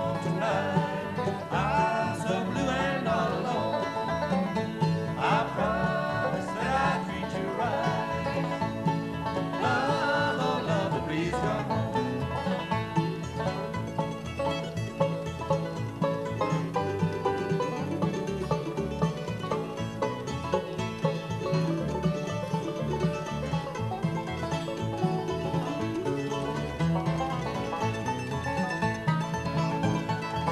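Bluegrass band playing an instrumental break with resonator banjo, mandolin, acoustic guitar and bass, steady and unbroken.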